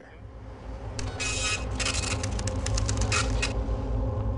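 A steady low machine hum that grows gradually louder. From about a second in, short bursts of mechanical noise sound over it, followed by a run of rapid clicks.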